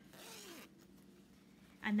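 Zipper on a canvas pencil case pulled open in one short rasping stroke near the start, lasting under a second.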